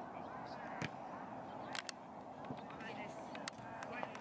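Open-air soccer field ambience with faint, distant players' and spectators' voices, broken by a few short, sharp knocks of a soccer ball being kicked on the pitch.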